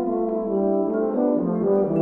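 Euphonium and tuba playing held notes together over marimba, the lower line stepping down in the second half.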